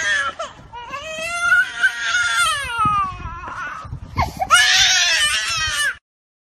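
A toddler crying: long, high-pitched wailing cries, then a louder, harsher scream about four and a half seconds in.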